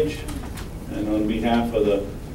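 A man speaking, with a pause of about a second before his voice resumes.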